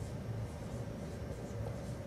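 Dry-erase marker writing on a whiteboard: several short, faint pen strokes, about two a second, over a steady low room hum.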